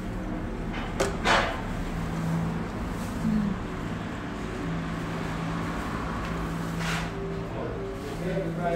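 Room tone with a steady low hum, broken by a click and a short rustle about a second in and another short rustle near the end.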